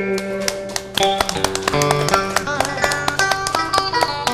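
Instrumental interlude of Vietnamese tân cổ giao duyên music: quick runs of plucked-string notes over a steady low note, following a sung line that trails off at the start.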